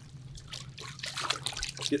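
Water sloshing and trickling in a plastic bin as a gloved hand swishes oxygen tubing around in rinse water, washing the soap out of the line; faint, irregular splashing that grows a little louder in the second half.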